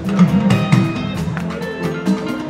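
Live band music: electric guitars over a steady drum beat, with low notes bending up and down.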